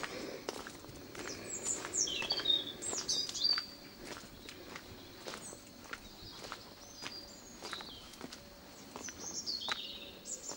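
Footsteps on stone paving at a steady walking pace, about two steps a second. Small birds chirp over them in short high phrases, most between about one and four seconds in and again near the end.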